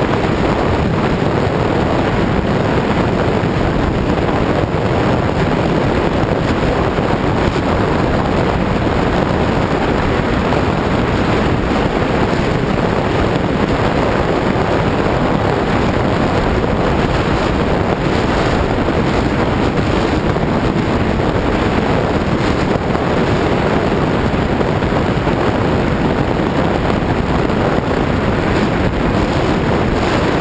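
Steady loud rush of airflow over a wing-tip camera on a radio-controlled A-10 model jet in flight, with the model's electric ducted fans running underneath.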